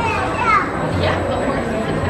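Children's high voices calling out over the busy din of a crowded shopping-mall hall, with a short high-pitched child's cry in the first half-second.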